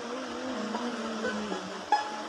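A low held note wavering slightly in pitch over a steady hiss, then a single plucked string note right at the end as a string instrument starts to play.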